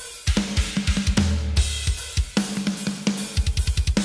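Recorded metal drum kit playing back through the main drum bus: rapid double-bass-drum runs with snare hits under a continuous cymbal wash. This is the drum bus without parallel compression, which sounds pretty good.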